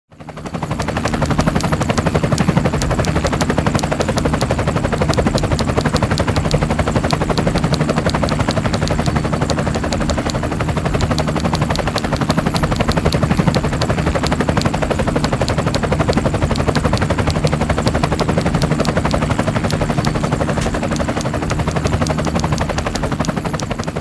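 A steady, rapid mechanical chatter of fast repeated clicks over a low hum, fading in at the start and cutting off sharply near the end.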